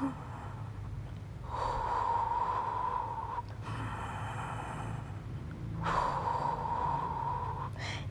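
A woman breathing audibly through the Pilates Hundred: two long breaths of about two seconds each, a few seconds apart, over a low steady hum.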